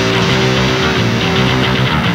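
Hardcore punk song playing: a distorted electric guitar and bass riff, with one guitar note held steady over it.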